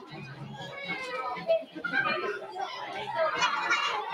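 Children and adults talking over one another in a busy party room, with children's voices prominent; no single clear voice or other sound.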